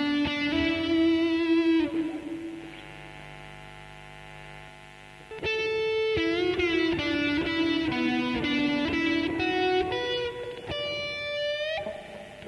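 Electric guitar playing a slow lead melody of sustained single notes with vibrato and string bends. A quieter held passage comes about two seconds in, and louder notes return past the middle.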